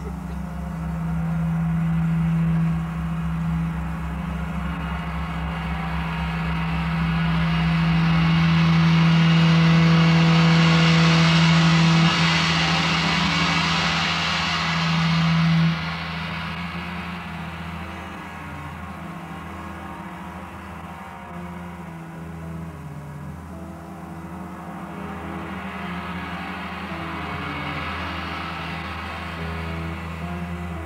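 Live psychedelic rock band playing a slow, hypnotic instrumental passage, recorded on an old audience reel-to-reel tape. A steady low drone runs under it, and two metallic washes swell and fade: a big one peaking about ten seconds in and a smaller one near the end.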